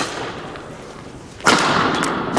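Two sharp hits, one at the start and a louder one about one and a half seconds in, each trailing off in a fading rush of noise.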